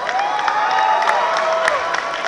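Audience clapping and cheering, with a couple of drawn-out held calls rising above the clapping.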